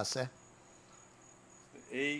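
Faint, high-pitched insect chirping, pulsing steadily, heard after a man's voice stops about a quarter of a second in.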